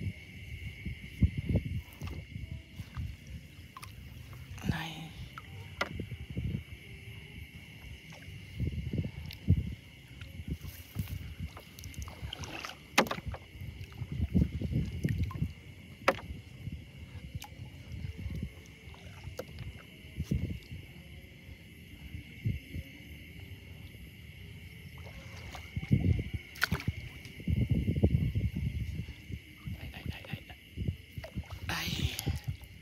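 Shallow floodwater sloshing and splashing in irregular surges every second or two as someone moves through a flooded rice field, with a few sharp clicks. A steady high-pitched drone runs underneath.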